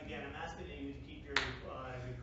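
Low, indistinct talking among several people, with one sharp click about a second and a half in.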